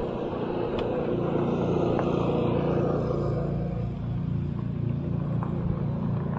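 Road noise from riding a fat-tyre electric bike at speed: a steady low hum from the tyres and motor, with wind hiss on the microphone that thins out about halfway through.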